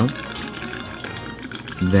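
Bacardi Limón rum pouring in a steady stream from a bottle's pour spout into a stainless steel mixing tin, under background music.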